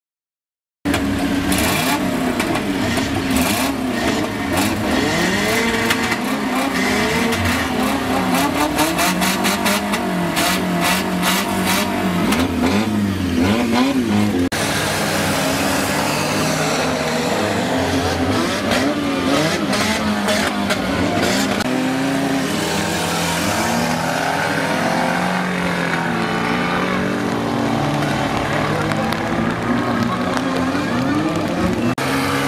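Several stripped-out small hatchback race cars' engines revving hard, their pitch rising and falling as they race and slide on a muddy track. A run of sharp clicks or knocks comes through in the first half.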